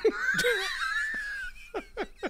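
Men laughing hard: a long, high-pitched wheezing laugh for about a second and a half, then a few short gasping breaths.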